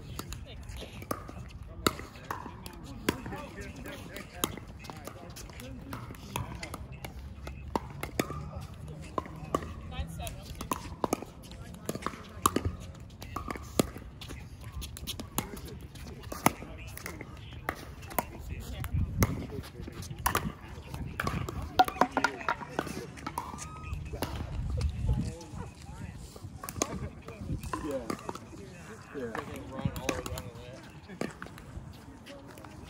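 Pickleball paddles hitting a hard plastic ball in rallies: sharp pocks at irregular intervals, with faint voices behind them.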